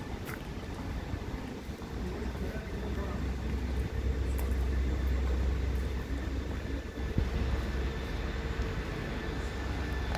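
City street ambience with a low rumble, like a passing vehicle, that builds about two seconds in, is loudest mid-way and fades by about seven seconds.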